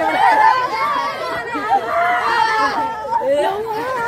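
Several people talking and calling out over one another: loud, excited group chatter.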